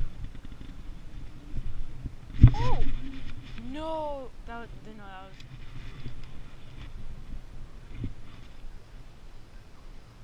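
A sharp knock of handling noise about two and a half seconds in, followed by a person's wordless voice: two long rising-and-falling calls, then a quick run of short sounds, over wind rumble on a head-mounted camera's microphone.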